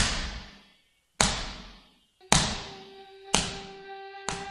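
A ball being kicked hard, four heavy thuds about a second apart, each ringing out with a long echo. A sustained musical note comes in under them about two seconds in.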